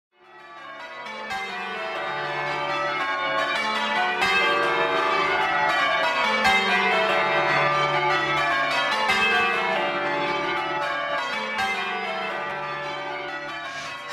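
Church bells change ringing: a peal of several bells struck one after another in a shifting order, fading in over the first couple of seconds and then ringing on steadily.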